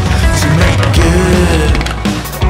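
Loud rock music soundtrack with steady bass and pitched instrument lines.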